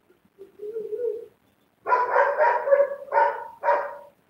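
A dog barking, a quick run of about six barks in the second half, after a lower, drawn-out sound about half a second in.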